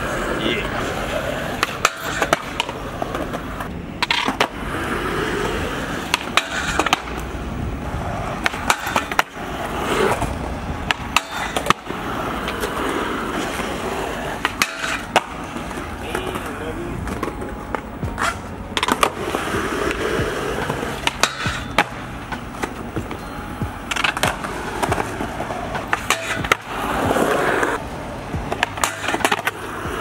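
Skateboard wheels rolling on concrete, broken by many sharp clacks of the board popping and landing, and the board sliding along a portable metal rail.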